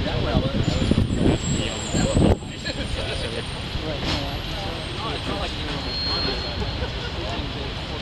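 Steady city street traffic rumble with men's voices talking over it. A louder low rumble in the first two seconds cuts off suddenly.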